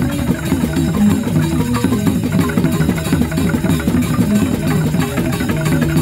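Traditional dance music played on tuned percussion and drums, a dense stream of rapid struck notes over sustained low tones.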